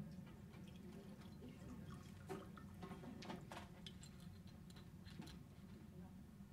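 Near silence: room tone with a steady low hum and a few faint clicks.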